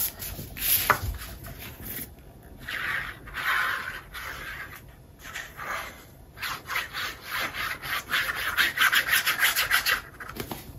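Paper being slid and rubbed flat by hand on a cutting mat, then quick back-and-forth scrubbing strokes, several a second, from the applicator tip of a liquid-glue bottle spreading glue over a piece of cardstock; the scrubbing starts past the middle and is loudest near the end.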